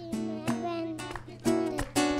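Strummed acoustic guitar accompanying a Christmas carol, with a voice singing the melody over it.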